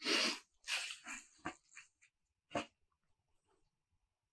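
Rustling of embroidered suit fabric being unfolded and handled by hand, in several short bursts over the first three seconds.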